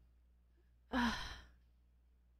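A woman's short, breathy sigh about a second in: a hesitant "uh" let out on an exhaled breath, lasting about half a second.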